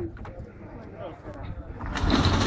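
Street ambience: faint voices over a low steady rumble, with a few light clicks.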